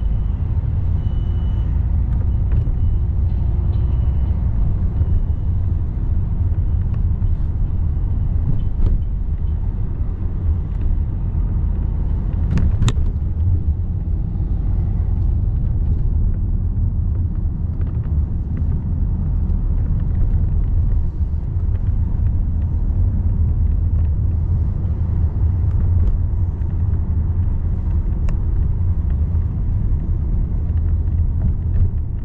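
Steady low rumble of a car's engine and tyres on the road, heard from inside the cabin, with one sharp click about thirteen seconds in.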